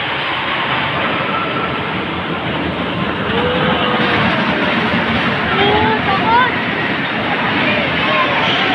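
Small kiddie roller coaster train running along its steel track: a steady rumble of wheels on rail. Riders' voices call out over it around the middle, as the cars pass close.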